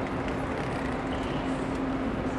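Railway platform ambience: a steady low hum under a constant noisy bustle of passengers getting off a train with luggage.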